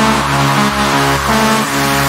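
Minimal techno breakdown: a buzzy, brassy synthesizer holds chords that step to new notes about every half second, with no drums.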